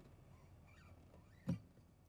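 Quiet room tone with a faint low hum, a brief faint squeak, and one short knock about one and a half seconds in.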